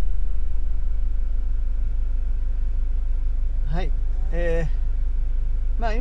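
Camper van's engine idling while the van stands stopped, a steady low hum heard inside the cab. A man's voice sounds briefly about four seconds in and again near the end.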